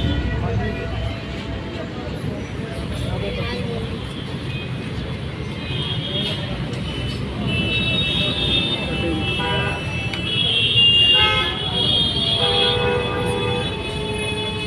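Busy street noise: a crowd talking over traffic, with vehicle horns sounding repeatedly in the second half.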